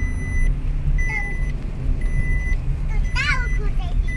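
Inside a moving car: a steady low rumble from the road and engine, with a car's warning chime beeping about once a second, each beep about half a second long.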